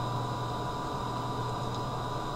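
Steady background hum and hiss, with a low hum and a few faint steady higher tones, and no distinct event.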